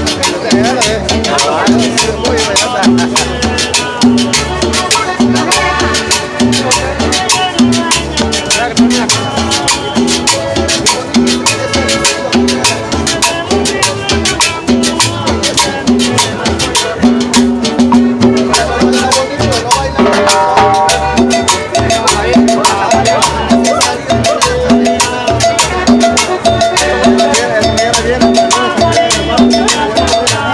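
Live Latin dance music from a small band, with a button accordion carrying the melody over a steady bass and percussion beat.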